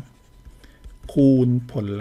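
Faint scratching of a stylus writing on a tablet screen, followed by a man's voice from about a second in.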